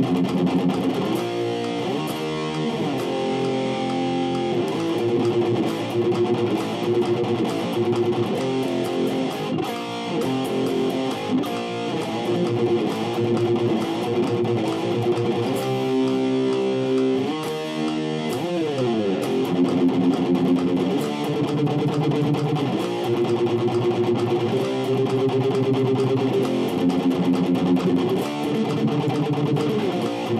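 Electric guitar, a Les Paul-style solid body, playing a rock riff of chords that change every second or so. It slides down the neck about eighteen seconds in.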